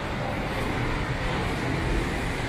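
Steady background noise of a large indoor shopping-mall concourse: an even hum and hiss, heaviest in the low end, with no distinct events.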